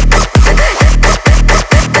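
Electronic bounce dance music from a DJ mix: a loud kick drum lands a little over twice a second, each hit carrying a bass note that slides down in pitch. The beat drops out briefly at the very end.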